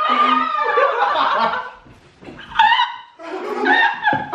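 A young woman laughing hard, in three bursts.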